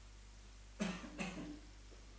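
A person coughs twice in quick succession, about a second in.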